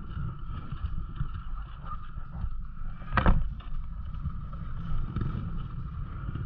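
Dirt bike engine running at low revs, with wind rumbling on the bike- or helmet-mounted camera's microphone. A short, sharp sound stands out about three seconds in.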